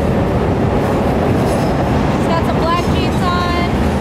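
Chicago 'L' elevated train running on the steel structure overhead, a loud, steady rumble.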